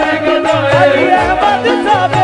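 Qawwali music: a lead voice sliding and ornamenting between held notes over steady harmonium chords and a repeating hand-drum beat.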